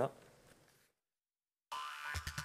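A voice's last syllable trailing off into a moment of dead silence, then a music sting with quick clicks starting near the end.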